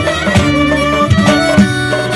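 Clarinet playing an ornamented folk melody over a steady drum beat, about two beats a second.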